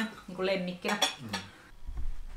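Cutlery clinking and scraping on plates during a meal, with a few sharp clinks about a second in, alongside a few words of speech.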